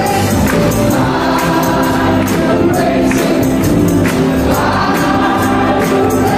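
Live gospel worship music: a man and a woman singing into microphones over piano, electric guitar, keyboard and drums, with percussion keeping a steady beat.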